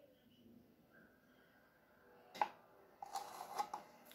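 Faint room tone with one short knock a little past halfway and faint handling noises in the last second.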